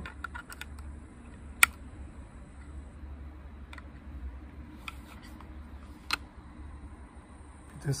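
Rear sight of a target pistol being adjusted with a small plastic tool: a few sharp clicks, the loudest about a second and a half in, over a low steady hum. The clicks come as the sight is moved down a click to shift the point of impact after sighting shots.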